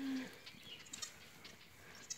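A short low goat bleat at the very start, then only faint background sound with a few soft high chirps.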